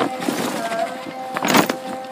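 Rustling and scraping as a heavy felt fabric grow bag is gripped by its rim and hauled against the surrounding plants, loudest in a short burst about one and a half seconds in. Faint steady melodic tones carry underneath.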